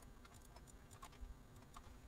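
Faint, irregular clicking of a computer keyboard and mouse, several clicks a second.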